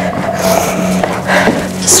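Upbeat workout music holding sustained tones, with two short hissy noises, one about half a second in and one near the end.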